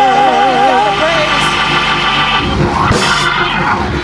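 Gospel church worship music. A note held with vibrato gives way about a second in to sustained organ chords, and a cymbal-like wash swells and fades around three seconds in.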